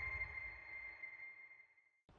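Tail of an electronic logo sting: a held high synth tone over a low rumble, fading away to silence near the end.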